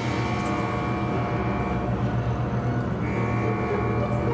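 Low, steady drone of an ominous film-score underscore, with a high held tone above it that drops out a little under two seconds in and comes back about three seconds in.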